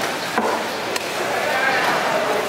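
Cleaver chopping into a large fish on a wooden chopping block: two sharp chops about half a second apart.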